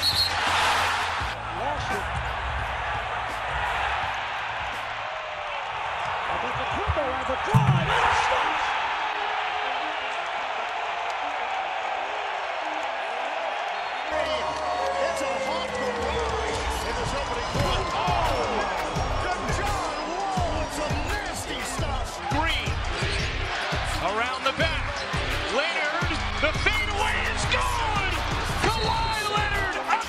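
Basketball game sound under a hip-hop music track with a steady bass beat: arena crowd noise, the ball bouncing on the hardwood, and sneakers squeaking on the court, most often in the second half. There is a loud thump about seven and a half seconds in.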